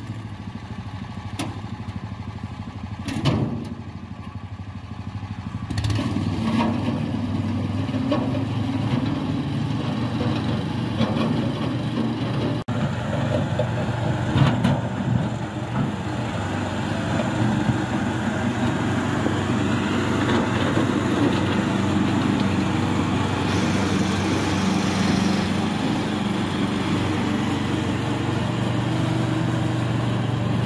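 Homemade tracked mini tractor's 20 hp Loncin engine running steadily as it drives through snow, quieter at first and louder from about six seconds in. A sharp knock about three seconds in.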